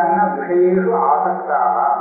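A man chanting Sanskrit verses in a recitation voice, holding a near-steady pitch with only brief breaks between phrases.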